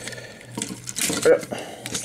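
Hard plastic toy-robot parts scraping and clicking as an arm piece is slid into its socket, with a brief murmur from a voice about a second in.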